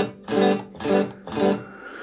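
Telecaster-style electric guitar plugged straight into an audio interface's Hi-Z instrument input, played clean with no effects: four chord strums, about two a second, each ringing briefly.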